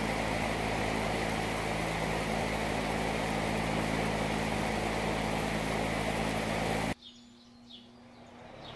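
Electric fan blowing air across a model sail: a steady motor hum with a rush of air, cutting off suddenly about seven seconds in.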